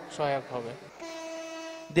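Diesel locomotive horn sounding one steady blast of about a second, starting about halfway through and cut off just before the end. A man's voice is heard before it.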